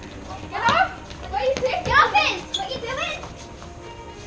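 Several children's voices shouting and calling out at once, loudest about a second and two seconds in, with no clear words.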